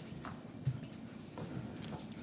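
Quiet meeting-room tone with a few faint, scattered clicks and small knocks, about four over two seconds.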